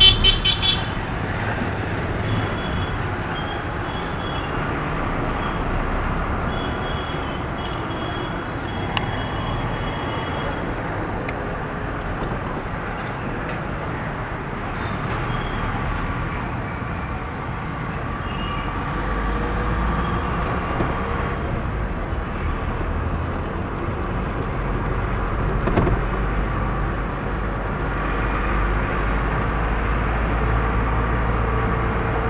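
Engine and road noise of a vehicle driving through city traffic, heard from inside the cabin. Horns sound throughout: a loud horn blast right at the start, then shorter, fainter toots off and on.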